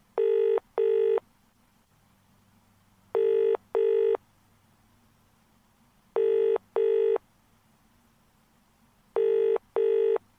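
British-style telephone ringback tone heard by the caller: four double rings, each a pair of short tones followed by a two-second pause, as the outgoing call rings unanswered at the helpline.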